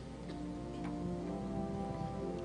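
Soft keyboard music playing held, sustained chords.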